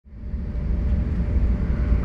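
Low, steady rumble of an SBB Twindexx double-deck train (RABe 502) running, heard from inside the carriage; it fades in over the first half second.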